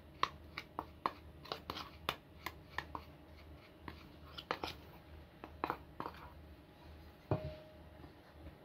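A teaspoon tapping and scraping inside a small stainless-steel bowl, knocking grated orange zest out into a glass bowl of flour: a run of light clicks, two or three a second at first, then sparser. One sharper knock near the end leaves a short ringing tone.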